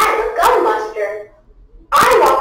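A person's voice, loud, in short phrases: one stretch from the start to a little past the middle, then a brief pause, then another starting just before the end.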